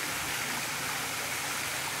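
Fountain jets splashing steadily into a pond: an even, continuous rush of falling water.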